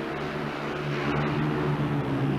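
Speedway motorcycles' 500 cc single-cylinder engines running flat out in a race, a steady engine note that swells slightly about halfway through.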